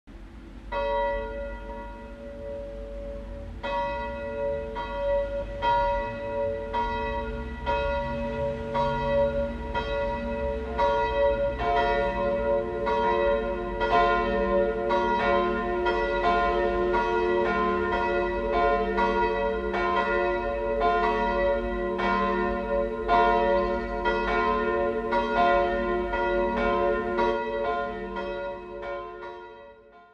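Church bells ringing, stroke after stroke, each leaving a long ringing tone; another bell joins about a third of the way in, and the ringing fades out near the end.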